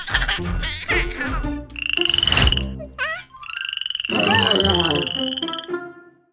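Cartoon sound effects of frogs croaking over background music, with two long high-pitched whistling tones in the middle.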